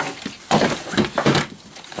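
Handling noise from nylon load-bearing gear and canteens being shifted about: a few dull knocks and rustles in quick succession.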